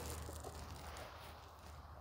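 Faint room tone with a steady low hum.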